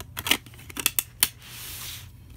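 Plastic DVD case trays and discs being handled by hand: a quick series of sharp plastic clicks and taps, then a short rubbing slide near the end.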